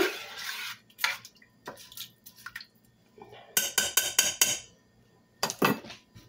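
A metal spoon clinking and scraping against the crock of a slow cooker as rice and liquid are stirred. A quick run of sharp clinks comes a little after halfway, and another knock comes near the end.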